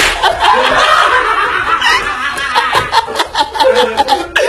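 A group of men laughing loudly and without a break, with several sharp smacks heard among the laughter.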